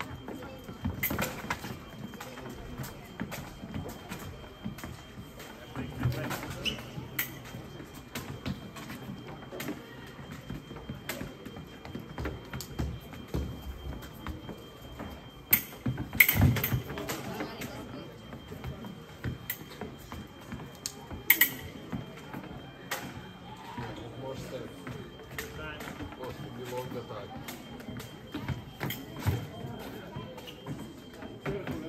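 Fencing bout: fencers' footwork stamping on the piste and blades striking, heard as scattered sharp clicks and thumps, the loudest about 16 and 21 seconds in, over the murmur of a hall.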